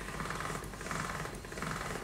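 Hand-cranked pasta machine turning, its gears and rollers making a rapid, steady clicking as a sheet of dough is rolled thin.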